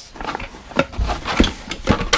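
Handling of boxes on a concrete floor: a dull thump about halfway through and a few sharp knocks and clunks as glass-topped watch boxes are set down and moved, with light rustling between.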